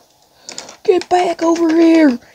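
Small plastic toy figures knocked and tapped against a wooden tabletop in quick, irregular clicks, starting about half a second in. From about a second in a voice holds a long steady note over the tapping.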